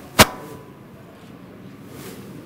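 A single sharp knock about a fifth of a second in, over a low steady background murmur.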